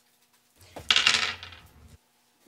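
A roll of Mentos mints being unwrapped by hand: a short rustling clatter of wrapper and candy, loudest about a second in, then fading before it cuts off suddenly.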